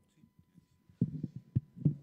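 Microphone handling noise: low, muffled thumps and rumble as the microphone is moved or bumped, starting suddenly about a second in, with the loudest knock just before the end.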